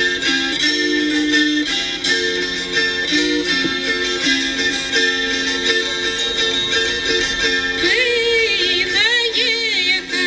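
Pskov gusli (a wing-shaped Russian psaltery) being plucked in a repeating melody over a sustained open-string drone, accompanying a Russian wedding song. About eight seconds in, a woman's voice comes in singing with wavering, ornamented turns of pitch.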